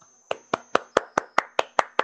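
One person clapping hands at an even pace, about five claps a second, starting a moment in.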